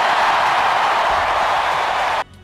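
Large crowd cheering and applauding, a dense, steady mass of clapping and shouting.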